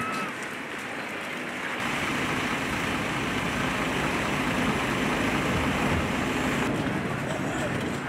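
Steady outdoor background noise with no distinct events, growing heavier in the low end about two seconds in.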